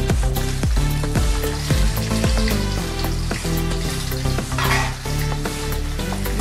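Sliced shallots sizzling as they hit hot oil with curry leaves in a wok, with a burst of spatula stirring near the end. Background music with a steady beat plays throughout.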